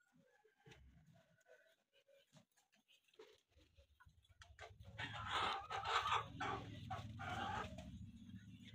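Domestic chickens clucking, with a rooster crowing loudly in the second half, over a low steady hum.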